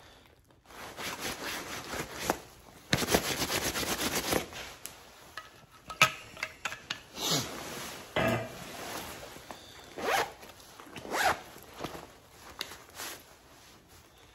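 A taped zipper on a nylon vest pocket being pulled open: a long run of rapid ticks about three seconds in. It is followed by rustling and scraping of the shell fabric as paper towels are pulled out of the pocket.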